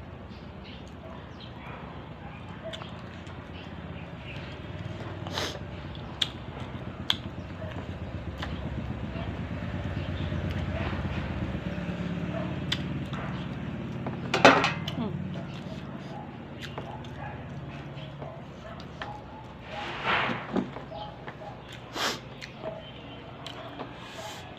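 Eating at a table: light clicks and taps of fingers and food against plates, a sharp louder knock about halfway through, and a low rumble that swells and fades in the middle. A few short voiced sounds come near the end.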